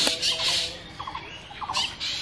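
Birds calling: a burst of high, harsh calls in the first half-second, short repeated notes in the middle, and another burst near the end.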